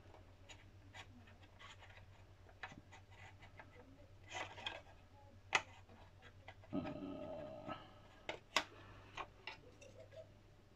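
Faint, scattered clicks and taps of small model-kit parts being handled and pressed together, with a few sharper clicks around the middle and near the end.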